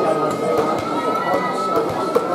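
Spectators chatting at once, a steady mix of overlapping voices with no single clear speaker.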